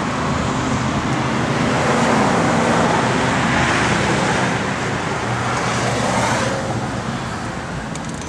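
Road traffic noise: a passing vehicle swells and fades over a few seconds, above a low steady hum.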